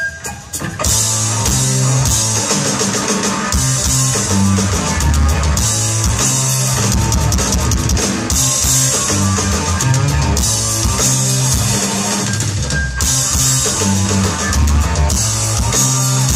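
Live hard-rock band playing an instrumental passage: drum kit, distorted electric guitar and bass guitar. There is a brief drop in the first second, then the full band comes back in and plays on loudly.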